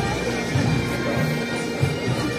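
Pipe band music: bagpipes playing, with a steady drone held under the tune.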